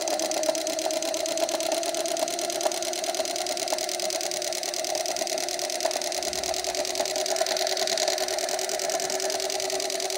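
Small electric motor inside a homemade miniature diesel engine model running steadily, a continuous whir with a fine rapid ticking, as it spins the model's flywheel and radiator fan.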